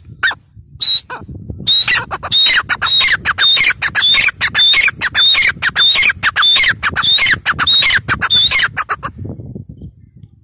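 Gray francolin calling: two single notes, then a fast run of repeated sharp notes, about three a second, that stops about a second before the end.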